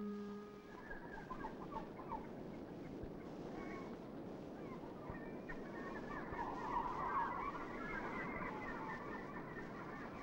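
A large flock of seabirds calling, many short calls overlapping into a continuous clamour that thickens in the second half. The last organ note of the film's music dies away at the very start.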